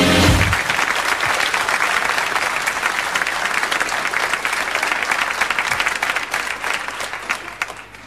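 Studio audience applauding, the clapping dying down near the end. A music tail stops about half a second in.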